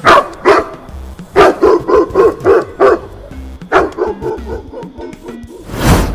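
A quick series of short, high yelps, about three to four a second, with a pause in the middle, ending in a loud whoosh.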